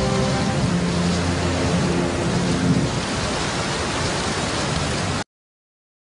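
Steady rain sound effect at the close of the song, with the music's last low held notes fading out under it in the first three seconds. The rain cuts off suddenly about five seconds in.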